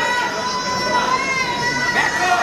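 A spectator's long, high-pitched yell, one held voice that wavers slightly and stops near the end, over the noise of a gym crowd.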